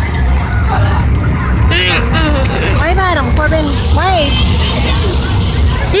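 Steady low rumble of a vehicle's engine running close by, with high voices calling out over it in the middle of the stretch.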